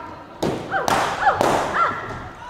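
Three balloons bursting with sharp bangs about half a second apart, with high voices crying out and laughing between the pops.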